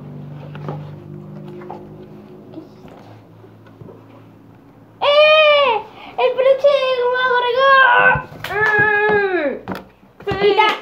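A quiet stretch of handling clicks over a low hum, then about five seconds in a run of loud, high-pitched, voice-like cries, each rising and falling, four or five in a row.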